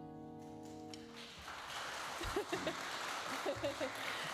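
The last held chord of a jazz trio number, piano and upright bass, dies away. About a second in, audience applause starts, with a few voices calling out.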